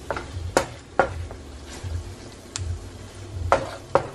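Wooden spoon stirring shrimp, chicken and onions in a frying pan, knocking sharply against the pan about six times, over a faint sizzle of the butter they are cooking in.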